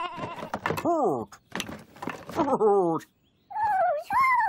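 Cartoon characters' wordless voice calls: a few short sung-out sounds, one gliding down in pitch about a second in, then wavering ones, with a brief pause just after three seconds. A few light clicks fall between the calls.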